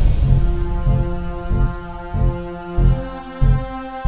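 Tense dramatic background music: a sustained, droning chord over a low beat that pulses about every 0.6 seconds.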